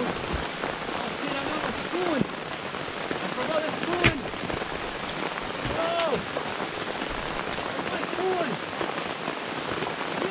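Steady rain falling, with a sharp knock about four seconds in.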